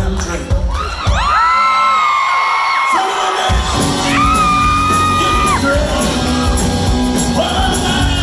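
Live band playing in a hall while audience members whoop and scream in long, high held notes. The drums and bass drop back briefly, then come in fully about three and a half seconds in.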